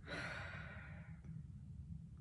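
A person sighing: one breath out lasting about a second and fading away.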